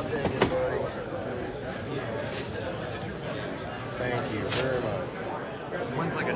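Indistinct voices of people talking in a busy indoor hall, with a few short clicks and rustles about half a second and four and a half seconds in.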